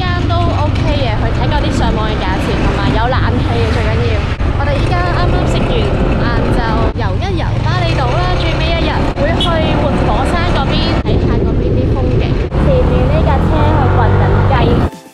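A woman talking while riding on a moving motorbike, over the steady low rumble of wind on the microphone and the bike's engine.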